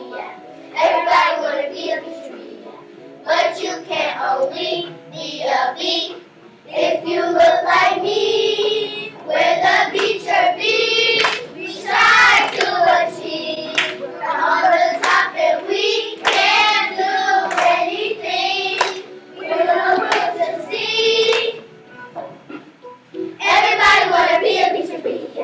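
A group of children singing a song together, with hand claps among the singing.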